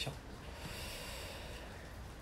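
Faint room tone with a soft breath through the nose.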